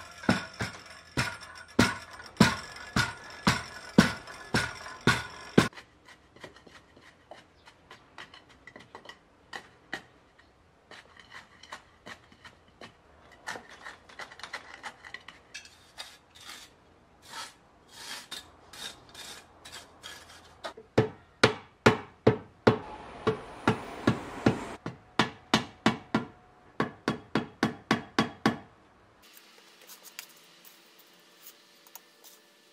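Blows packing down a decomposed-granite (masa-do) soil fill, about twice a second for the first five seconds or so. Then come softer scraping and scattered light knocks as the soil is worked by hand and trowel. Another run of sharp blows, about twice a second, starts about two-thirds of the way in.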